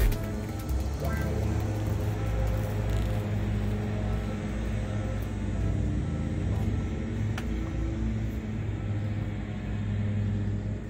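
A steady low mechanical drone runs evenly throughout, with a few faint clicks over it.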